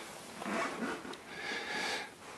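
Soft, close breathing and snuffling in two faint breaths about a second apart.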